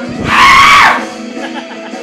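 A person's loud, high-pitched scream lasting under a second, its pitch dropping as it ends, over background guitar music.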